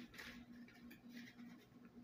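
Near silence, with faint rustling of a paper leaflet being handled a couple of times over a low steady hum.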